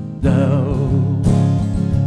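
Live acoustic guitar strumming a steady rhythm, with a sustained melody line held in vibrato over it, one long note and a new note entering near the end.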